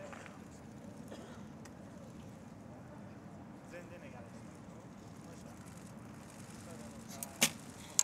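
Recurve bow shot: a single sharp snap of the released bowstring near the end, then a second, shorter click just over half a second later, over a quiet, steady crowd background.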